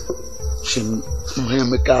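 A man speaking, starting about half a second in, over a steady high-pitched insect drone.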